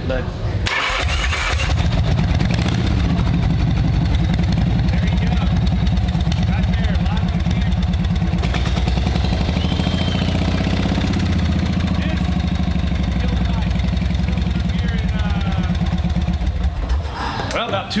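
Easyriders chopper motorcycle engine starting about a second in and running steadily, then cut off shortly before the end. The bike had been cantankerous about starting.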